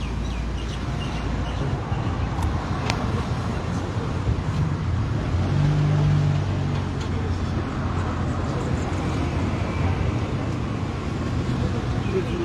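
Street traffic noise, with a motor vehicle's engine hum that swells briefly about halfway through.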